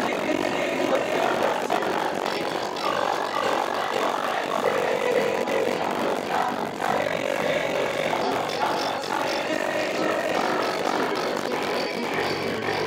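A mixed group of young voices singing and chanting an upbeat action song together, over an electronic keyboard accompaniment.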